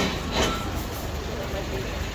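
Outdoor street background: a steady low rumble and hiss, with a short burst of noise right at the start and a fainter one about half a second later.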